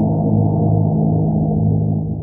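Deep, low transition sound effect under a title card, starting suddenly and holding steady at a loud level, with its energy in a low hum of several notes.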